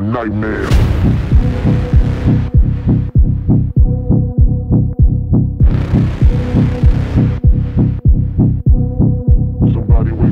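Dark electronic dance music: a pulsing bass kick at about two to three beats a second under a held synth tone, with a hissing noise swell washing in twice.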